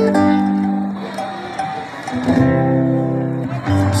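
Live band music over the stage sound system: a guitar-led instrumental intro of held chords that change a few times.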